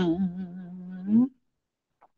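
A man's voice chanting Khmer smot (Buddhist poetry chant), quietly holding the last note of a line. The note wavers, slides up in pitch and stops about a second and a quarter in.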